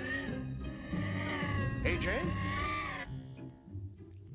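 A man's voice calling out in a drawn-out, wavering tone for about three seconds over background music, then breaking off.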